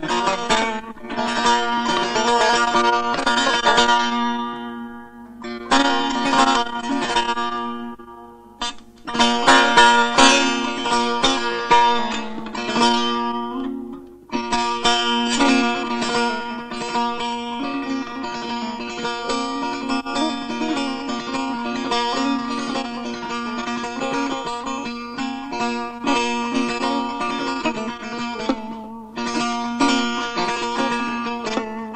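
Solo setar playing in the Persian mode of Bayat-e Esfahan. It starts with short plucked phrases whose notes ring and fade, separated by brief pauses, and from about fifteen seconds in plays a continuous run of rapidly repeated notes.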